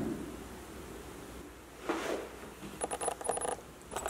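A muffled bang from fireworks going off in the neighbourhood, heard indoors about two seconds in, followed by a quick run of rattling clicks.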